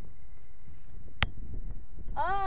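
Low, steady rumbling noise on the microphone, with one sharp click just over a second in.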